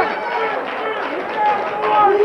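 Several voices talking over one another, with studio audience chatter, in a heated argument.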